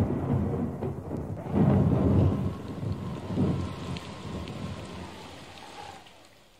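Thunder rumbling over rain. It swells again about one and a half seconds in and then dies away toward the end.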